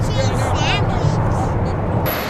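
Boeing 747-400ER jet engines heard from the ground as the airliner climbs away after takeoff: a steady, heavy low rumble. Brief high-pitched voices sound over it in the first second.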